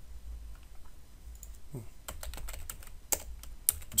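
Typing on a computer keyboard: a quick run of key clicks in the second half, two of them sharper and louder.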